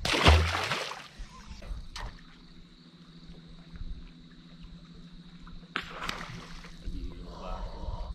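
A Murray cod splashing back into the river beside the boat as it is released: one short, loud splash with a thud. After it comes quieter water with a faint steady hum, and a second, shorter burst of noise about six seconds in.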